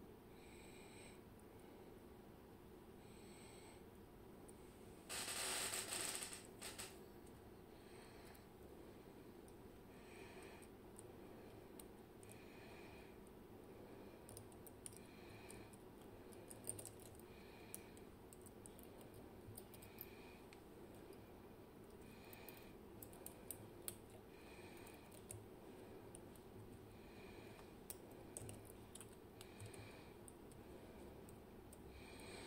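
Faint metal-on-metal clicks of a lock pick and tension wrench being set into and worked in a Bowley door lock cylinder, growing more frequent in the second half. A brief, louder rush of noise about five seconds in, and soft breathing about every two seconds.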